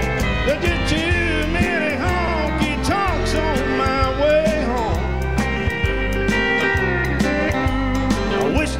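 Live country band playing an instrumental passage: an electric guitar lead with bending notes over a steady bass and drum beat.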